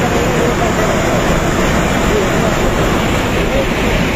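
Flash-flood torrent of muddy water after a cloudburst, rushing in a loud, steady roar, with voices faintly heard over it.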